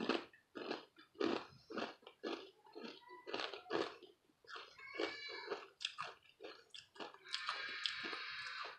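Close-up chewing of a crisp chocolate Florentine lace cookie: irregular crunches, a few each second, with a longer stretch of noise near the end.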